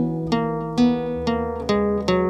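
Acoustic guitar playing a slow riff one note at a time, about five single picked notes roughly half a second apart, each ringing on into the next.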